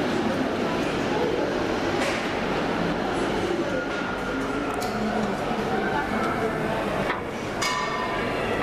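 Indistinct background chatter of many people in a large indoor hall, a steady hubbub with a few sharp clicks.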